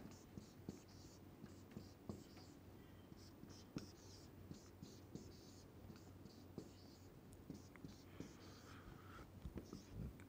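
Marker pen drawing on a whiteboard: faint, short, scratchy strokes, a few each second, as small boxes are outlined, with occasional light taps of the tip on the board.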